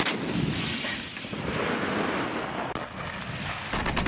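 Artillery gun firing: a loud boom at the start with a long rumbling tail, then further blasts about three seconds in and again near the end.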